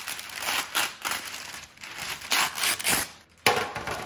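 Parchment paper crinkling and rustling as it is unrolled and pressed flat by hand, in irregular crackles. The crackling dips briefly about three seconds in, then there is a sudden louder sound.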